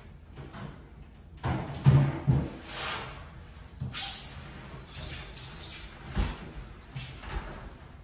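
A heavy bathroom vanity cabinet being maneuvered through a doorway: several knocks and bumps with scraping, sliding noise between them, and a sharp knock a little after six seconds in.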